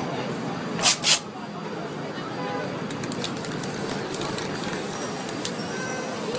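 Two short bursts of hissing from an aerosol spray-paint can about a second in, each a fraction of a second long, over steady street chatter.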